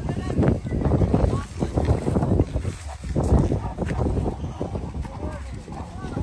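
Indistinct talking: voices whose words are not clear, over a steady low rumble of wind on the microphone.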